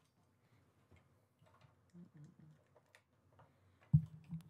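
Faint, scattered clicks and knocks of headphones and a phone being handled during a change of audio setup, ending in one sharp, louder knock.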